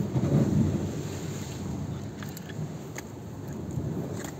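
Wind rumbling on the phone's microphone over the steady wash of the sea, gustiest in the first second.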